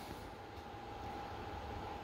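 Quiet room tone: a faint steady hiss with a thin steady hum, and no distinct event.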